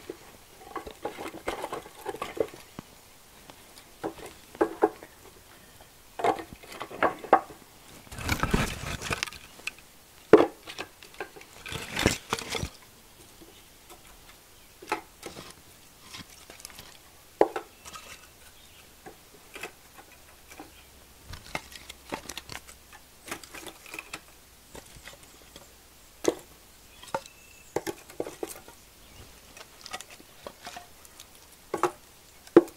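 Split kindling sticks knocking and clattering against each other and the wooden frame of a homemade firewood bundler as they are stacked in by hand. The knocks come irregularly, with two longer, louder rattles about eight and twelve seconds in.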